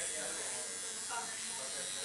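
Coil tattoo machine buzzing steadily as it works ink into the skin.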